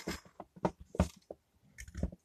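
A few soft, short clicks and taps from handling on the workbench as the repaired LED lamp is powered up through the mains tester; no bang follows, because the lamp lights normally.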